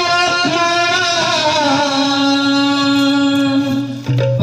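Kirtan devotional singing: a voice carries a melody in long, slightly wavering held notes over a steady low drone. The singing dips briefly right at the end.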